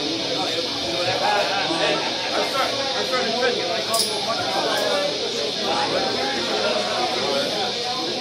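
Indistinct crowd chatter in a bar between songs, many overlapping voices over a steady high hiss, with a short sharp clink about halfway.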